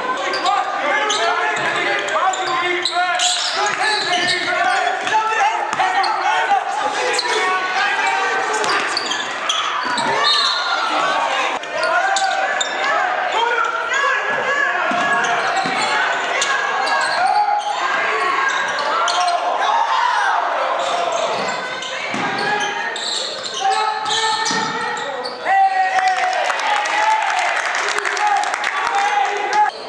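Basketball being dribbled on a gym's hardwood floor, with the voices of players and spectators over it, echoing in a large hall.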